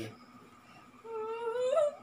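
A high-pitched, wordless whimpering whine from a person, held for about a second after a brief hush and rising in pitch at the end, like a stifled laugh.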